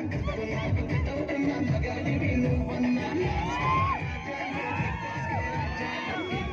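Loud music with a heavy, repeating beat, with a crowd's shouting voices rising and falling over it.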